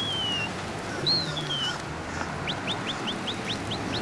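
Bird calls: two clear, high whistles that each fall in pitch, then a quick run of short rising chirps, about four a second, near the end.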